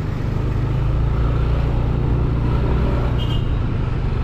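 Motorbike engine running steadily while riding in traffic, a low drone with road noise over it; a short high tone sounds about three seconds in.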